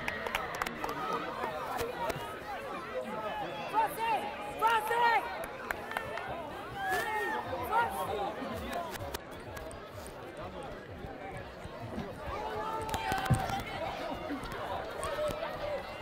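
Scattered, distant shouts and chatter from young rugby players and touchline spectators, with no voice close to the microphone.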